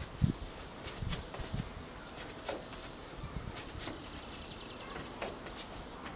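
Light footsteps of sneakers on floor tiles during a judo footwork drill: a scattered series of soft taps and scuffs against faint outdoor background.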